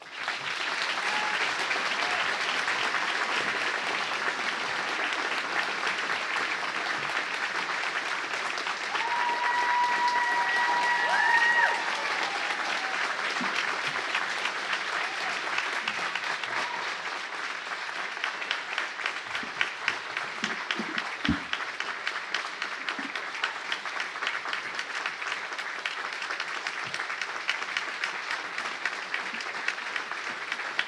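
Audience applauding: dense, steady clapping, with a held high note rising over it about nine to twelve seconds in. The clapping then thins into more distinct individual claps.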